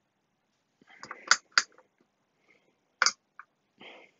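Rotary switches of a decade resistance box clicking as its dials are turned: a quick pair of sharp clicks about a second in and another near the three-second mark, with faint handling sounds between.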